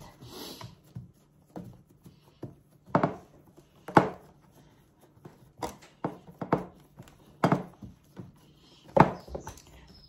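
Hands pressing crumbly pie-crust dough flat into a metal baking tray, with irregular dull thumps and taps, the loudest about three, four, seven and a half and nine seconds in.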